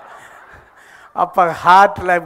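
A brief pause with faint room noise, then a man's voice over a microphone from about a second in: a drawn-out vowel sound that dips and then rises in pitch, not a clear word.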